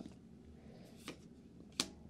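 Trading cards being handled and moved on a playmat: a faint brush about a second in and a sharp click near the end.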